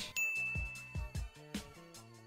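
A single bright ding sound effect strikes just after the start and holds one high tone for about a second, over background music with a steady beat.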